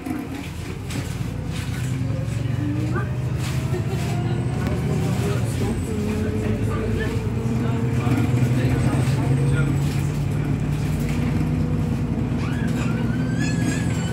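A single-deck service bus's engine and drivetrain, heard from inside the passenger cabin as the bus pulls away and accelerates. A low drone grows louder over the first couple of seconds, with a whine rising in pitch, then it runs steadily.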